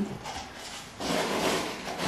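Rustling and scraping from handling at a potting bench: quieter at first, then a louder stretch of rubbing noise from about a second in.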